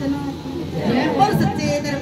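A woman's voice speaking or half-singing into a hand-held microphone, with chatter from other women around her.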